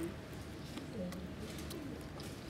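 A person's soft, brief murmured hums, low and gliding in pitch, over a steady low background hum, with a few faint small clicks.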